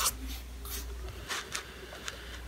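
A pen scratching on paper in several short writing strokes during the first second and a half, then stopping as the pen is lifted.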